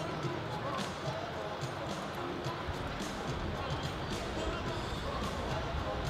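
Four-in-hand horse team trotting on turf, with irregular soft hoof thuds and clicks, over background music and crowd voices from the arena.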